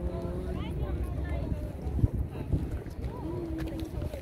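Wind buffeting the microphone in a steady low rumble, with people's voices talking in the background and a single thump about two seconds in.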